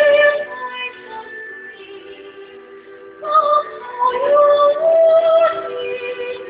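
An amateur male singer sings a slow ballad over a soft karaoke-style backing track. His voice drops out about half a second in, leaving only the held backing chords, and comes back in about three seconds in.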